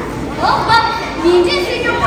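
A child's voice delivering a Tibetan opera (lhamo) line, rising in pitch and then holding a note, in a large hall.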